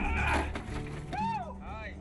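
Men shouting in excitement as a huge Nile perch is landed in the boat: two rising-and-falling yells about a second in, after a short rush of noise at the start, over background music.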